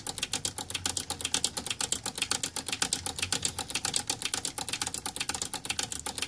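Push-button speaker switches on an Onkyo TX-26 receiver being worked in and out over and over to spread freshly injected contact cleaner: a fast, even run of clicks.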